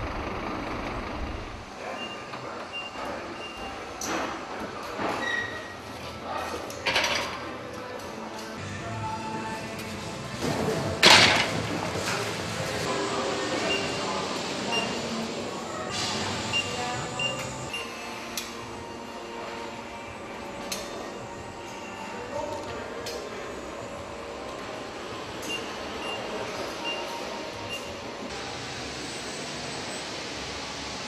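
Machinery running in a large warehouse, with scattered clanks and knocks, short high beeps repeating at intervals, and a loud, brief rush of noise about eleven seconds in. A low engine rumble is heard in the first two seconds.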